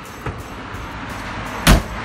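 A single sharp slam near the end: a fifth-wheel trailer's pass-through storage compartment door being shut, over steady background music.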